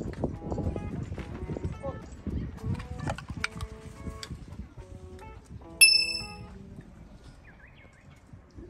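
Background music, and about six seconds in one bright, ringing clink from a toast with drink cans.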